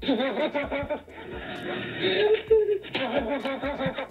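AI-generated 'laughing bear' sound effect from Meta Audiobox playing back: a run of chuckling, laugh-like vocal sounds. It sounds muffled, with no high treble, and has a longer drawn-out sound about halfway through.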